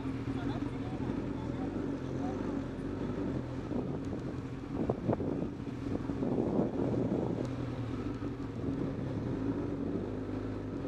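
Motorcycle engine running at a low, steady speed while riding slowly, its note holding even, with a rougher noisy stretch about halfway through.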